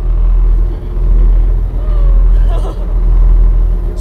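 A tour boat's engine running with a steady low drone, heard from inside the boat's wheelhouse.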